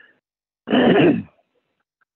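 A person clearing their throat once, a short rough burst lasting under a second.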